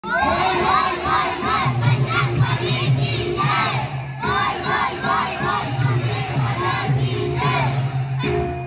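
Many children's voices shouting together in a quick, rhythmic chant, over a steady low tone.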